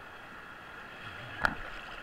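Steady rush of river whitewater in a rapid, heard from a camera at the water's surface, with one sudden sharp hit about a second and a half in.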